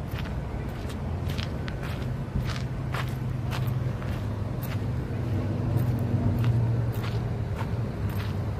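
Footsteps of a person walking, heard as a string of short clicks at uneven spacing. Under them runs a steady low hum that gets louder about five to seven seconds in.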